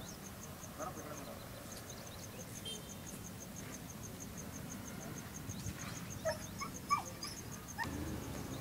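Outdoor ambience: a steady, rapid high-pitched chirping like an insect, several pulses a second, with a few short calls near the end, the loudest about seven seconds in.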